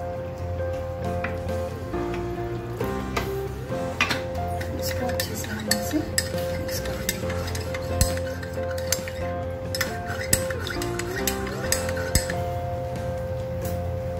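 Background music, over which a metal spoon clinks and scrapes again and again against a ceramic cup while custard powder is stirred into a little water.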